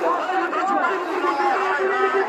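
A large marching crowd, many voices talking and calling out at once, overlapping.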